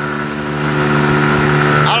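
Outboard motor running at a steady cruising speed, one constant hum, with water splashing along the aluminium hull of the moving boat.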